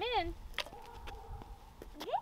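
Sticks of sidewalk chalk dropped into a pot: one sharp click about half a second in and a fainter one near the end, just after a woman's voice says "in".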